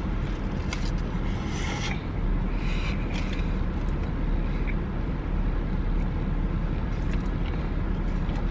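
Parked SUV's engine idling with the air-conditioning blower running, a steady low drone inside the cabin. Brief rustles of the burger's aluminium foil wrapper come about two and three seconds in.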